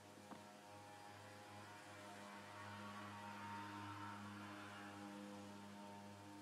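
Faint, steady electrical mains hum, a low drone with a stack of overtones, growing a little louder in the middle. A single light click about a third of a second in.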